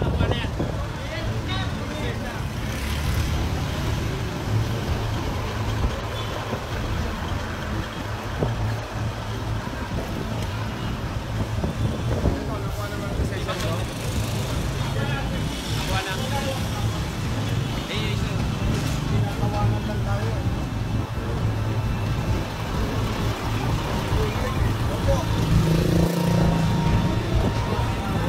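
Heavy container trucks' diesel engines running, a steady low rumble, with people's voices talking over it.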